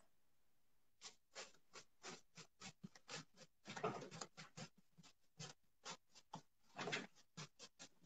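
A paintbrush working paint onto a furniture piece: faint, quick short strokes, about four a second, in runs with brief pauses.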